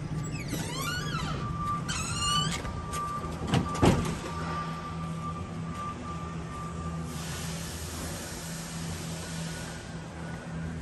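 Two squeaks with sliding pitch, then two sharp knocks about three and a half to four seconds in, typical of a metal warehouse door swinging and banging shut, over a steady machinery hum and a held high tone. An even hiss comes in about seven seconds in.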